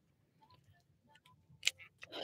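Faint handling noise from small items being fiddled with in the hands: a few scattered light ticks and one sharper click about one and a half seconds in.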